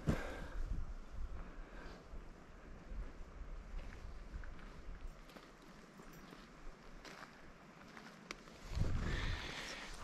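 Quiet outdoor ambience by a pond: a faint steady hiss with a few scattered soft clicks, and a brief low rumble near the end.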